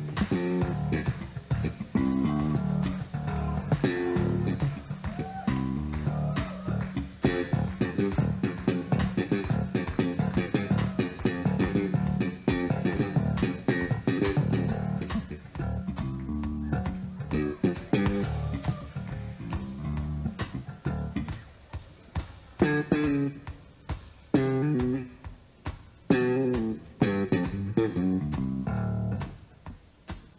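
Electric bass guitar played live: a busy run of plucked notes that turns sparser, with short breaks between phrases, about two-thirds of the way through.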